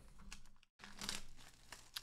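Quiet crinkling and rustling of a cardboard sports-card box and its plastic wrap being handled and opened by hand, with small clicks and a brief break partway through.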